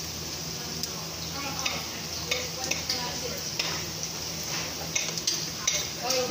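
A ladle stirring soup in a rice cooker's metal inner pot, with a scatter of light clinks and knocks against the pot, over a steady low hum.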